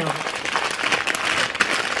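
Packaging being handled: a dense, continuous crinkling and rustling made of many fine crackles, lasting about two seconds.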